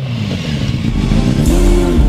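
Honda CBR600F4 inline-four motorcycle engine running, with music with a heavy bass coming in about a second in.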